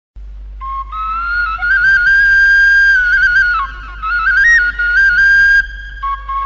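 Music: a solo flute-like wind instrument playing a slow melody of long held notes with small quick ornamental turns, over a steady low hum. It starts about half a second in and dips briefly near the middle.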